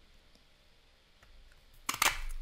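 Near silence, then a single sharp click near the end as a handheld umbrella-shaped craft punch snaps down through a strip of stamped paper.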